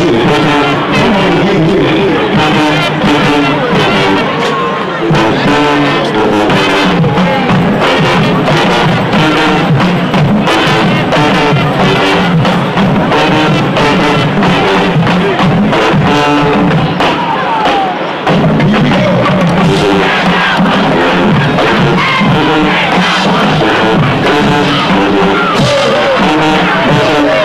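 High school marching band playing, brass with a steady drum-line beat. About 18 seconds in the band cuts off briefly, then comes back in loud all at once.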